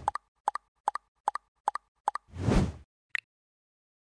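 Animated logo sound effects: six quick double pops, evenly spaced at about two and a half a second, then a whoosh and one last short high blip.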